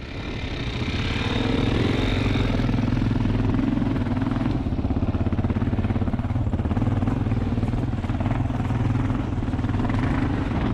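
Single-cylinder dual-sport motorcycle engine pulling away and running steadily under load as the bike rides up a dirt trail, building in level over the first second.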